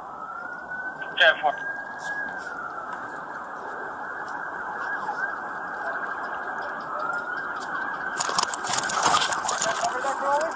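Police siren wailing: a slow rise in pitch, a hold, a fall, then another rise. A burst of rustling noise is heard near the end.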